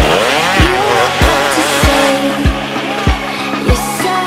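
Dirt bike engine revving up and back down in the first second or so, laid over a music track with a steady thumping beat.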